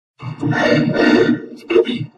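Heavily distorted, pitch-shifted logo audio from a video-effects edit. A loud, dense, growl-like burst starts about a quarter second in and lasts over a second, then a shorter burst comes near the end.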